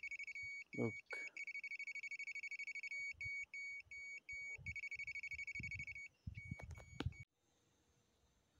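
Homemade ionic long range locator's buzzer sounding a rapid, high-pitched pulsing beep, broken by a few short gaps, set off by the mobile phone held close to its antenna. Light handling thumps and a couple of clicks, and the beep cuts off suddenly about seven seconds in.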